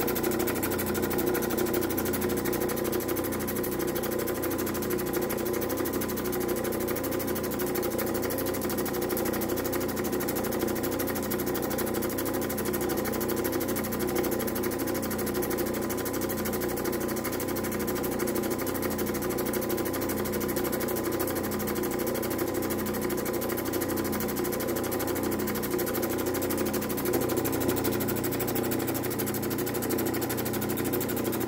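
Lapidary grinding machine running steadily, an agate being ground on its 80-grit wheel. The motor hum is steady, with a slow regular pulsing.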